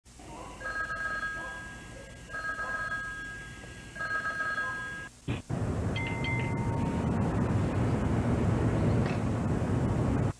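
A payphone rings three times, each ring a burst of steady high bell-like tones. About five seconds in, the ringing stops and a louder steady rumbling noise takes over, with a short high tone a second later.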